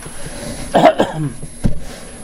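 A person coughing, a few rough coughs about a second in.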